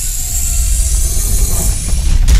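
Intro sound effect for a logo reveal: a loud, steady hissing rush over a deep rumble.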